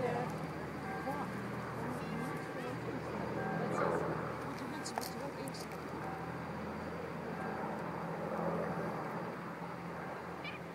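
Avro Lancaster bomber's four Rolls-Royce Merlin piston engines droning steadily as it flies past, with voices murmuring over it.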